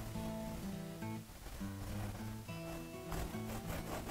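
Soft background music with pitched notes changing every half second or so.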